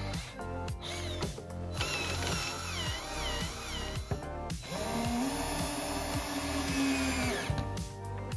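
Cordless drill spinning a screw pressed point-down onto a work surface. The motor spins up about halfway through, holds a steady whine for about three seconds and then stops. Background music with a steady beat plays throughout.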